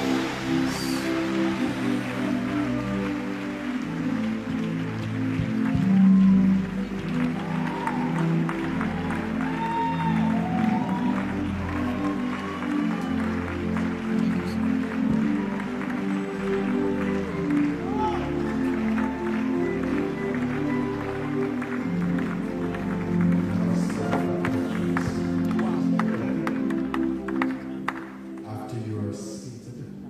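Live worship music: sustained keyboard chords and bass held and shifting slowly, with scattered congregation voices over it.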